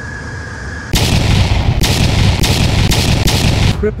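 Jet engines of a large multi-engine aircraft heard from inside the cabin: a steady high turbine whine, then about a second in a sudden jump to loud, rough jet noise with repeated surges as the engines are run up to high power on the runway.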